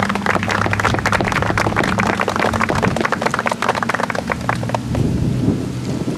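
A small crowd clapping, many hands in quick irregular claps that die away about five seconds in, over a steady low hum.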